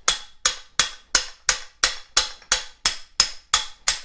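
Hammer striking a steel swaging tool into the annealed end of a copper pipe: a steady run of about a dozen sharp metallic taps, roughly three a second, each ringing briefly. The softened copper end is starting to stretch open over the tool.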